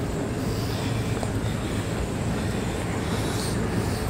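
Steady low mechanical hum with a rushing noise over it. It holds an even level without starting, stopping or changing.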